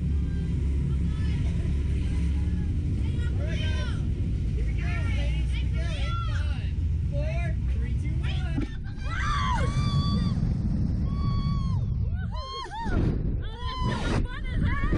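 Riders' voices, indistinct chatter and long drawn-out squeals, over a steady low rumble on a Slingshot reverse-bungee ride. Near the end the rumble gives way to gusts of wind on the microphone as the capsule is launched.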